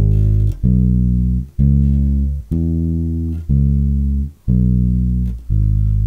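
Unaccompanied Fender electric bass plucked with the fingers, playing a basic blues line in E slowly, about one note a second. It climbs from G sharp through B and C sharp to the octave E in the middle, then walks back down, each note ringing until the next.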